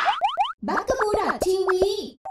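Channel logo sting: four quick rising whistle-like sweeps, a short break about half a second in, then a cartoonish voice sound effect whose pitch slides up and down.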